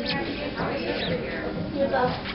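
Indistinct background chatter of several voices in a large room, with a few short high chirps mixed in.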